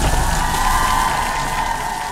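Aftermath of a fireball explosion: crackling flames and debris over a fading rumble. Over it sits a single high tone from the edited soundtrack, gliding up slightly and then holding.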